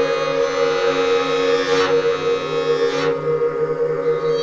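Layered, multitracked violins holding long sustained notes over a steady low tone, in an instrumental passage of a song.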